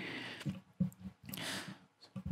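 Breath and small wet mouth clicks close on a voice microphone: a few short clicks, then an audible intake of breath near the end.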